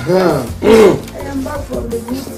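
A person's voice giving two loud, drawn-out calls, each rising and then falling in pitch, the second louder, over background music.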